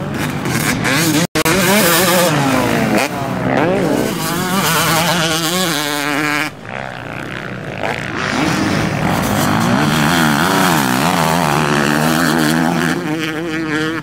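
Honda CR250 two-stroke motocross bike engine revving hard, its pitch climbing and falling again and again as the rider works the throttle and gears. The sound breaks off for an instant about a second in, and there is a sudden change just past halfway.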